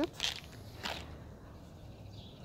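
Light handling noise as a small metal tin of airgun pellets is set down on a table, with one short click about a second in.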